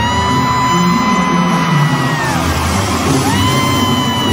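Live regional Mexican band music in an arena, heard from the stands: a long held note that slides up into pitch, holds for about two seconds and falls off, then a second held note rising in about three seconds in, over the band and crowd yells.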